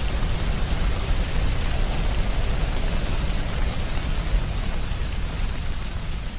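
Cartoon fire sound effect of flames burning: a steady hissing, crackling noise over a deep low rumble.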